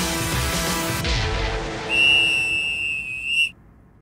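Background music dies away, then a single long, steady whistle blast lasts about a second and a half and cuts off sharply near the end.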